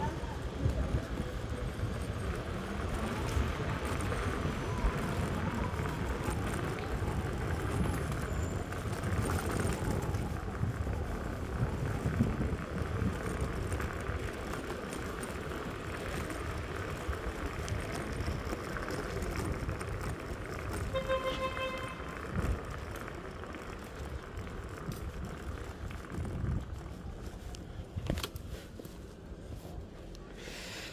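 SpeedSavage S11 electric scooter rolling over brick-paved streets: a steady rumble of tyres and chassis on the pavers that eases in the last third as it slows. A short beeping tone sounds about two-thirds of the way through.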